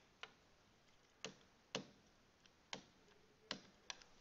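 Stylus tapping and clicking on a tablet or pen-tablet surface while handwriting: about six faint, sharp clicks at uneven intervals.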